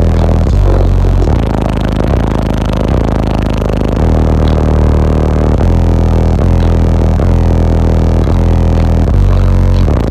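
Bass-heavy music played loud through a car audio system's two PSI Platform 5 subwoofers in an enclosure tuned to 26 Hz, heard from inside the car's cabin. Deep bass notes change every second or so.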